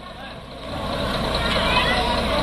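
Diesel engine of a stopped city bus running, its low rumble growing louder about half a second in, with voices of people around it.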